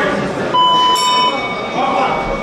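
A timer buzzer sounds for under a second, and a bell is struck about a second in and rings on, over the hall's crowd voices: the signal that ends the bout.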